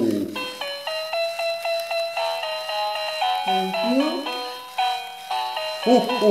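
Background music: a melody of short held notes following one another, about three or four a second, over a faint steady high tone.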